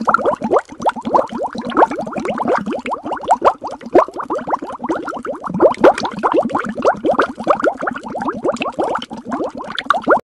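Underwater bubbling sound effect: a dense stream of quick bubbles, each a short plop rising in pitch, several a second.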